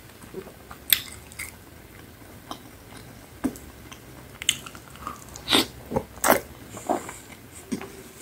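Close-miked biting and chewing of a pizza slice, with irregular crisp crunches and wet mouth sounds. The loudest crunches come about a second in and again between about five and six and a half seconds.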